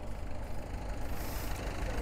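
Massey Ferguson tractor engine running steadily as it approaches, growing slightly louder.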